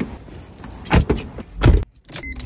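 A car door being opened and slammed shut: a knock about halfway through, then the heavier, louder thud of the door closing near the end.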